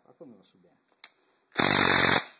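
Cordless impact driver with a socket spinning a chrome wheel nut onto an ATV wheel stud, in one loud burst of well under a second near the end.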